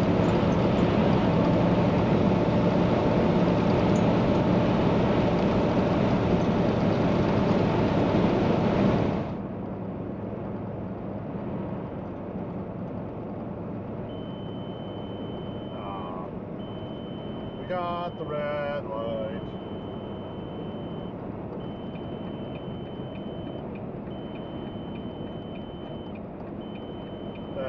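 Semi truck cab noise while cruising on the highway: a steady engine and road drone that drops abruptly to a quieter, duller level about nine seconds in. In the second half a faint high steady tone sounds in long stretches with short breaks.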